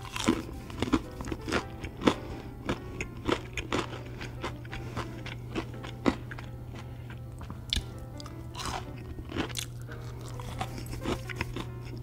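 A person biting and chewing crispy fried food close to the microphone, with irregular crunches several times a second throughout.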